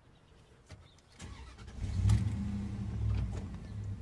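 A faint click, then a car engine starts a little over a second in and settles into a steady low idle.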